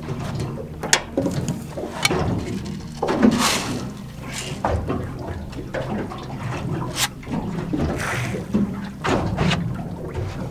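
Water lapping and slapping against a small boat's hull over a steady low rumble, with a few sharp clicks and knocks of fishing tackle being handled.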